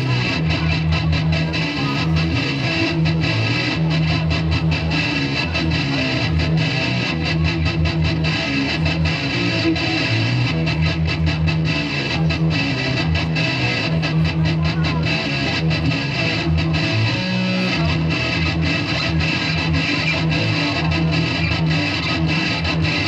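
Stratocaster-style electric guitar played live through an amplifier, a continuous run of quickly picked notes over steady low notes.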